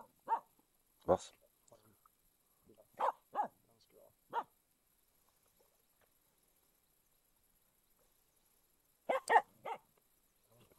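Finnish Spitz barking in short single barks, a handful spread over the first few seconds, then a pause, then a quick run of four barks near the end.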